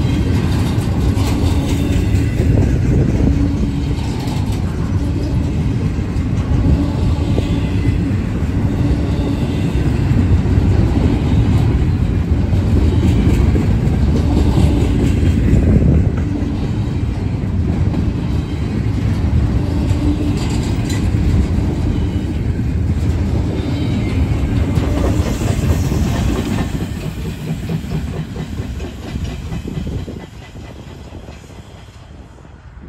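Double-stack intermodal freight train rolling past at close range: a steady heavy rumble of steel wheels on rail with intermittent clicks. The sound fades over the last few seconds as the end of the train moves away.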